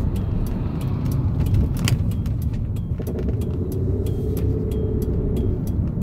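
Road and engine noise inside a moving car's cabin: a steady low rumble, with faint clicks scattered through it.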